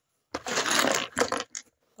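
Small plastic LEGO pieces clattering together as a handful is moved: a dense rattle of many little clicks lasting about a second.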